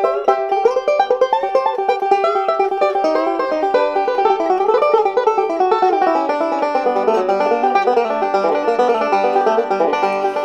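Instrumental break of a bluegrass recording, led by a five-string banjo picking fast, dense runs over the band's backing.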